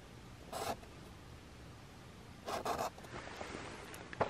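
Felt-tip marker drawing two quick short lines on a flat surface, two brief scratchy strokes a couple of seconds apart.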